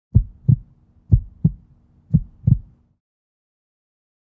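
Heartbeat sound effect: three double thumps, each a deep lub-dub, about a second apart over a faint low hum.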